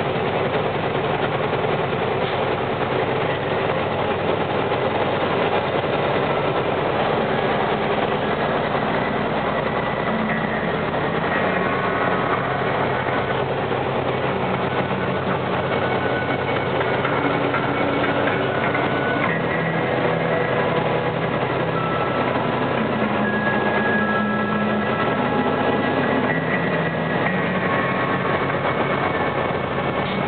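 Vehicle engine and tyre noise heard from inside the cabin while climbing a mountain grade: a steady drone, with faint tones that shift in pitch now and then.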